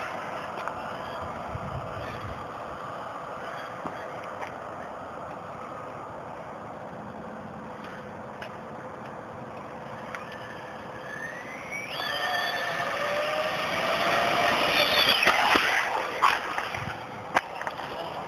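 Brushless-motor RC on-road car running a speed pass. A high-pitched motor whine is faint at first, grows louder from about twelve seconds in and rises in pitch to a peak a little later, then falls away.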